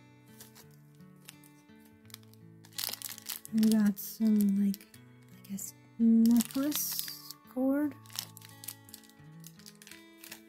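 Thin clear plastic bags crinkling as they are handled, with steady background music of held notes throughout. A voice with sliding pitch sounds a few short phrases in the middle, louder than everything else.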